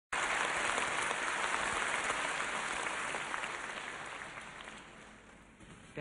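Large concert-hall audience applauding, the clapping dying away over the last few seconds.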